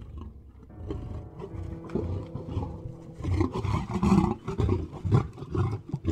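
Tiger growling and grunting in a string of rough, low pulses, growing louder about halfway through as if the animal is coming closer.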